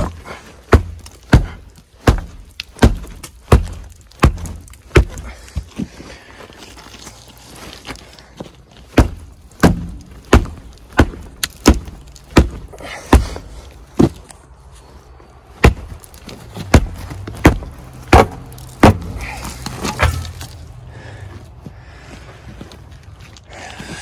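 A work boot kicking a concrete foundation pier again and again, a sharp thud roughly three times every two seconds in three runs with short pauses between them. The pier is cracked through at ground level and is knocked over.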